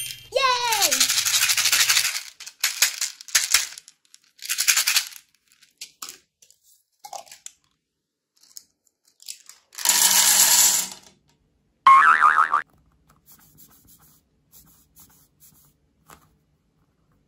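Cartoon-style sound effects: a falling 'boing' glide about half a second in, a short hissing burst around ten seconds in, and a brief wobbling pitched sound a couple of seconds later. Between them come faint clicks and rattles of small plastic candy beads in their container being handled and poured.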